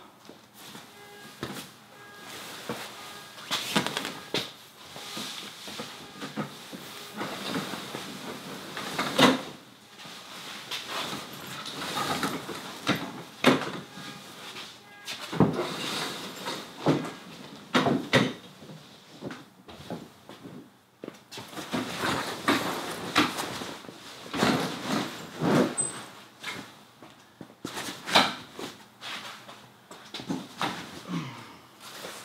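Insulated fabric of a Clam Jason Mitchell Elite hub-style pop-up ice shelter rustling and flapping as it is pulled up and spread, with irregular knocks and clicks as its roof poles are raised and lock into place.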